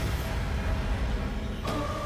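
Low rumbling drone from a TV serial's dramatic background score, with a held note coming in near the end.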